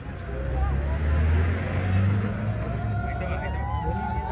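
Low engine rumble of a motor vehicle going by, swelling about half a second in and easing off after the middle, under a crowd's scattered chatter.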